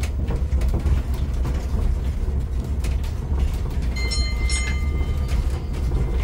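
Tourist road train rolling over cobblestones: a steady low rumble with scattered rattling clicks from the carriages. About four seconds in, a short high ringing tone sounds twice, lasting about a second.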